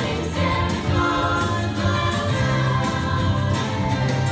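A group of girls' voices singing together as a choir, over instrumental accompaniment with strong held bass notes.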